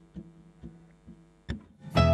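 A count-in of light drumstick clicks, about two a second and evenly spaced, each with a faint low ringing. The full band comes in loudly on the last beat as the song starts.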